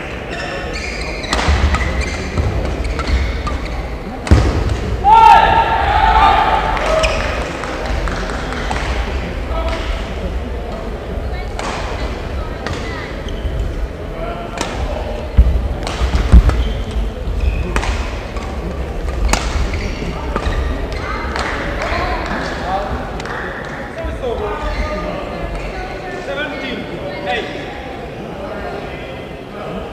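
Badminton rackets striking shuttlecocks in irregular sharp cracks, with shoes squeaking on the court floor and low thuds of footwork, from rallies on nearby courts. A pitched squeak stands out about five seconds in, over indistinct voices.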